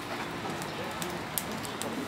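Open wood fire crackling in the firebox of a vertical döner grill: a steady hiss with many irregular sharp pops.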